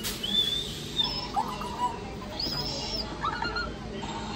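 Touch-activated plush bird toy giving off a string of short, high electronic chirps and squeaks.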